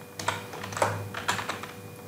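Computer keyboard being typed on: several separate keystrokes at an uneven pace, spelling out a word.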